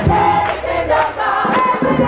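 A female gospel trio singing in harmony, holding long notes.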